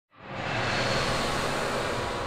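Intro sound effect: a dense rushing whoosh with a low hum underneath, swelling up from silence within the first half second and then holding steady.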